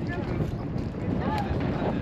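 Wind buffeting the microphone, an uneven low rumble, with voices of people nearby breaking through briefly.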